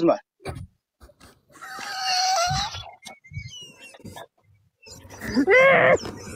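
Men laughing over a video call, with a long, high-pitched, wavering laugh about a second and a half in and more laughter building near the end.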